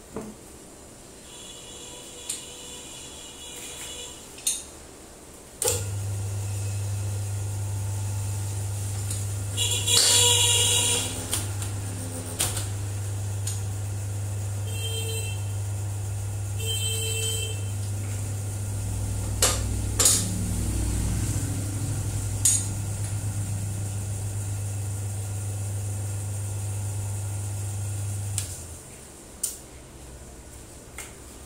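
Electric hydraulic press pump hums steadily for about twenty seconds, pressing the head bearing off a Makita 9500 angle grinder's spindle, then cuts off. Sharp metal clicks and a brief hiss come over the hum.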